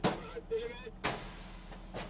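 Gunfire: two sharp cracks, one at the start and one about a second in. After the second comes a steady hiss of air escaping from a punctured tyre.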